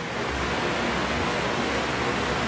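Steady, even hiss with a low rumble underneath: background room noise picked up by the pulpit microphone.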